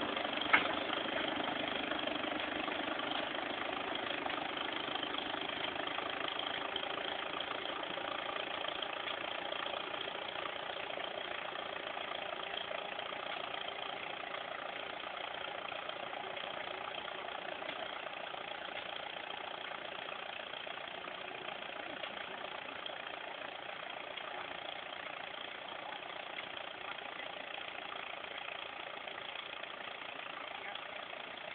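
Small farm tractor's engine running steadily as it pulls a plant transplanter down the row, slowly fading as it moves away. A single short click about half a second in.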